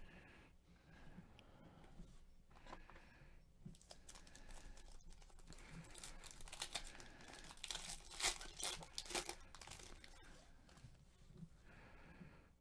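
Faint crinkling and tearing of a trading-card pack's foil wrapper as it is ripped open, with a busier flurry of crackling a little past the middle.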